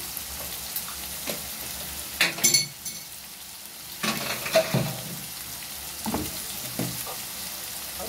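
Pieces of liver and sliced hot green chilli peppers frying in oil in a pan, a steady sizzle, broken by a few sharp knocks and scrapes; the loudest knocks come a little over two seconds in.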